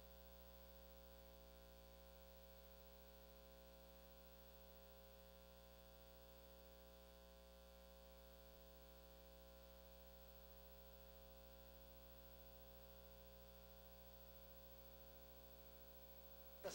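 Near silence, with a faint, steady electrical hum.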